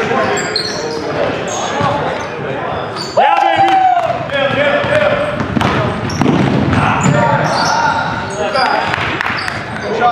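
Indoor basketball game on a hardwood gym floor: the ball bouncing, sneakers squeaking in short bursts, and players calling out, all echoing in a large hall. A loud call rings out about three seconds in.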